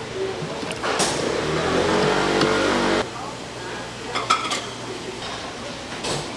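Busy food-stall sounds: a loud mechanical drone with a low hum for about two seconds that cuts off suddenly, then a few sharp clinks and knocks of kitchen utensils.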